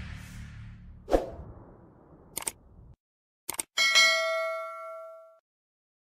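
Sound effects of a subscribe-and-bell animation: the tail of intro music fades with a short hit about a second in, then a couple of mouse-click sounds and a bright notification ding that rings for about a second and a half before fading.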